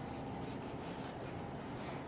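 Faint sounds of a knife slicing through raw brisket on a cutting board, over a steady low background hiss.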